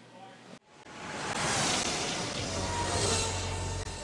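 A rushing whoosh of noise that starts after a sudden cut about half a second in, swells over about a second and stays loud, then eases off near the end, with a low rumble under its second half.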